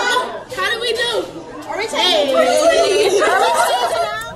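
Several girls' voices talking loudly over one another in overlapping chatter.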